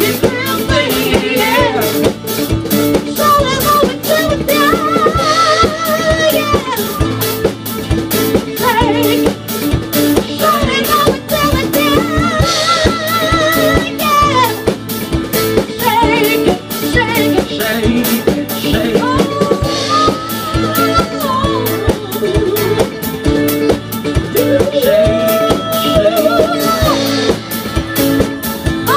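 Live band rehearsing a retro 1970s-style song: a drum kit keeps a steady beat under singers holding long notes with vibrato.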